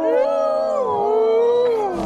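Grey wolves howling: a long, wavering howl that rises at the start and slides down in pitch near the end, with other howling voices overlapping it.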